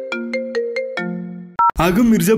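Mobile phone ringtone: a short melody of struck notes, several a second, that cuts off about one and a half seconds in, followed by a brief two-tone beep, then a man's voice starts.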